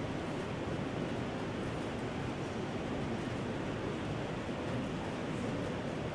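Steady hiss of room noise, with faint scratches of chalk on a blackboard as arrows are drawn.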